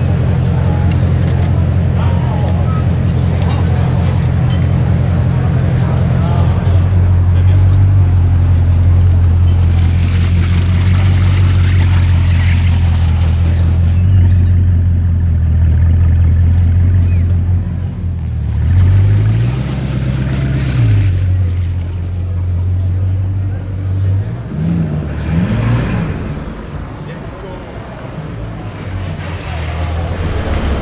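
Bugatti Chiron's quad-turbo W16 engine running at low revs as the car rolls slowly, with one rise and fall in revs about two-thirds through and two smaller blips soon after. Voices of onlookers close by.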